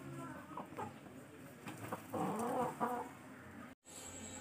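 Chicken clucking softly, then giving louder, drawn-out calls that bend in pitch about two seconds in.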